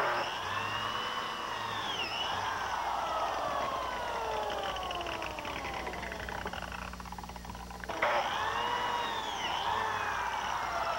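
Electric biscuit joiner switched on and cutting a slot in a wooden post. Its motor whines and then falls in pitch as it winds down. It is started again about eight seconds in.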